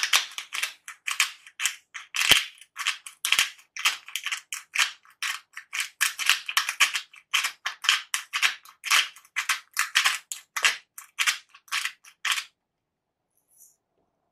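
Twist-top pink salt grinder grinding salt crystals: a quick, gritty crunching, several clicks a second with each twist of the grinder. It stops about two seconds before the end.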